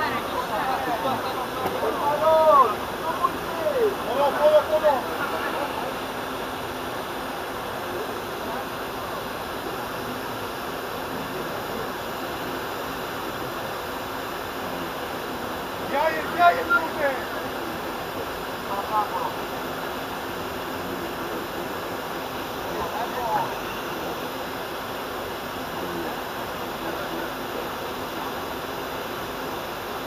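Shouts and calls from players on an outdoor football pitch, heard at a distance over a steady rushing background noise. There are a few calls in the first five seconds, a louder burst about sixteen seconds in, and fainter ones later.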